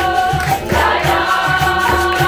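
Live capoeira roda music: berimbaus, an atabaque hand drum and pandeiros playing a steady rhythm, with low drum beats pulsing several times a second, under group singing.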